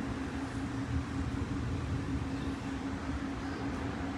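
Steady low mechanical hum with one constant held tone, a background machine running.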